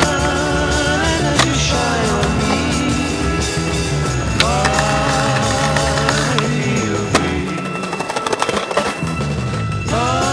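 Skateboarding on concrete over a song: board clacks and wheel noise from tricks, with a few sharp pops and a quick run of clicks and clacks near the end, where the music briefly drops.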